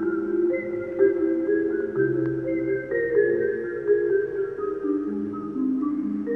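Two mallet-percussion instruments played as a duo: overlapping pitched notes that ring on for a second or more, in a reverberant church.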